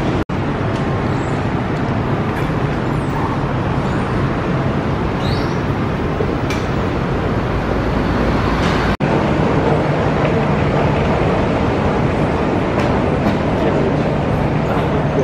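Steady city background noise, road traffic at first, running throughout at an even level. It drops out completely for an instant twice, about a quarter second in and about nine seconds in.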